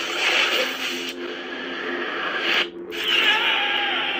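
Wizard-themed lightsaber sound font playing from the saber: a steady low blade hum under a rushing, crackling spell-battle effect. Near three quarters of the way in the sound briefly cuts out, and a new effect with a wavering tone starts over the hum.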